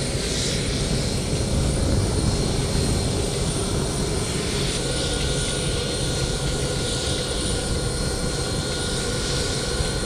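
Steady low rumble of jet aircraft engines, with a faint thin whine joining about five seconds in.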